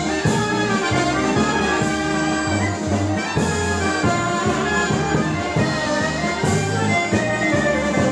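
Greek folk dance music led by brass and wind instruments over a steady, evenly stepping bass line, played for a circle dance.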